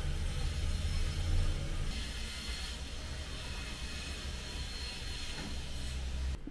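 A steady low rumble with an even hiss over it, like a running motor or machinery, a little brighter in the hiss about two to three seconds in.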